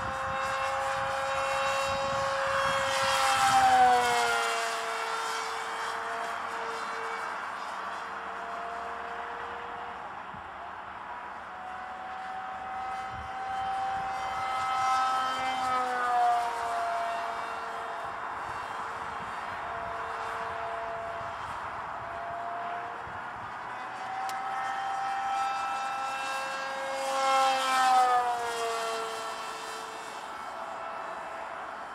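Whine of the electric motor and 7x5 propeller of a foam RC Eurofighter Typhoon jet model in flight. It passes by three times, a few seconds in, mid-way and near the end; each time it grows louder and then drops in pitch as it goes past.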